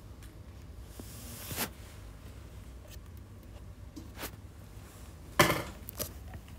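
Low steady room hum with a few handling knocks and clicks: a short swish ending in a click about one and a half seconds in, a light click about four seconds in, and a loud sharp knock near the end.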